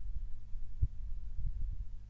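Steady low electrical hum in the recording, with a few soft low thumps: one a little under a second in and a short cluster near the end.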